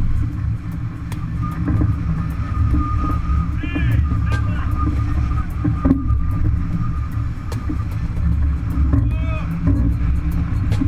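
Wind buffeting the microphone and water rushing past the hull of a racing yacht sailing hard, heeled over, as a steady low rumble. A faint steady whine holds through the middle, and short shouts come about four seconds in and again near the end.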